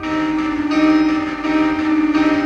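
A live rock band starts playing suddenly, opening its song on a steady, held low note with sustained higher notes layered above it.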